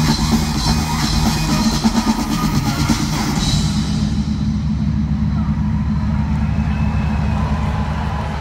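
Loud live dance-pop music through an arena PA, with a steady heavy drum beat, heard from the stands. About halfway through the treble drops away, leaving mostly the bass and beat.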